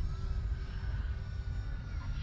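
Low, uneven rumble of wind on the microphone, under a faint steady hum from a distant electric RC plane's motor and propeller.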